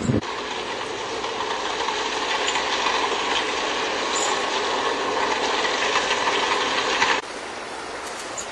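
Steady mechanical noise that cuts off abruptly near the end.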